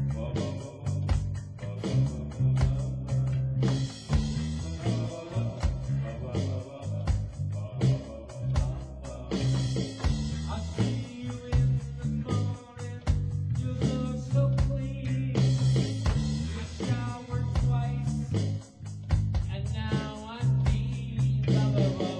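A small band playing live in a rehearsal room: electric guitar, drums and keyboard over a heavy bass line, with a steady beat.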